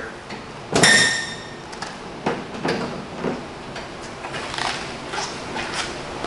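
A sharp metallic click with a brief ringing about a second in as the hood latch on a 1967 Camaro is released, followed by a few lighter knocks as the fiberglass hood is raised on its springs.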